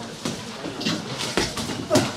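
Sparring in a boxing ring: about four sharp thuds of gloved punches and footwork on the ring canvas in two seconds, the loudest near the end.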